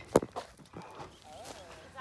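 Footsteps on dry straw mulch: a sharp knock near the start, then a few softer steps, with a faint voice in the background past the middle.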